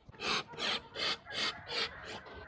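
Footsteps on dry leaves and dirt, about five steps at a steady walking pace of roughly two and a half a second.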